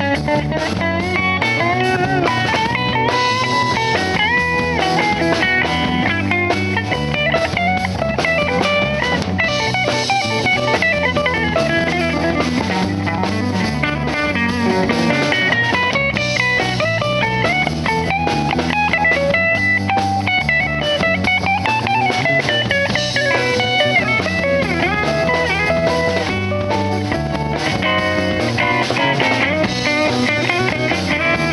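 Live rock band playing an instrumental passage: an electric guitar plays a lead line with bent, gliding notes over a rhythm guitar and drum kit.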